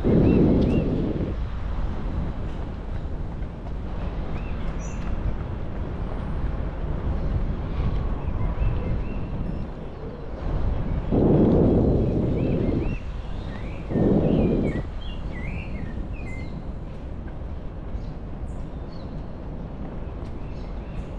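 Birds chirping in short calls over a steady low rumble. The rumble swells loudly three times: at the start, for about two seconds around eleven seconds in, and briefly around fourteen seconds in.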